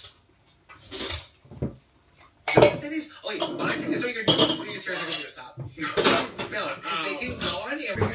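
Dishes and cutlery clattering and knocking together as they are handled at a kitchen sink, with a couple of short knocks first and a steady run of clatter from about two and a half seconds in.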